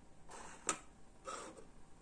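Soft plastic handling noises with one sharp click about two thirds of a second in, as the magnet half of a wireless door/window contact sensor is moved against the sensor body.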